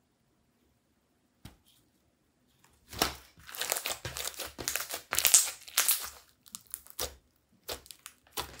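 Clear slime, coloured with red and violet eyeshadow, being squished and kneaded by hands, crackling and popping. Nearly silent for the first couple of seconds, then about three seconds in a dense run of crackles starts, loudest around the middle, thinning to scattered pops near the end.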